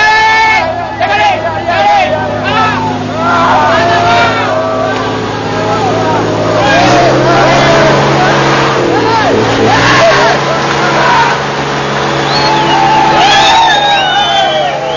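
Tractor engine running steadily, its pitch stepping up for a few seconds about seven seconds in before settling back, under several people shouting and calling over one another.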